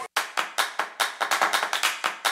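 A quick, slightly uneven run of hand claps, several a second, starting suddenly.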